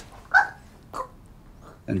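A woman's short, strained cry about a third of a second in, then a fainter second one about a second in.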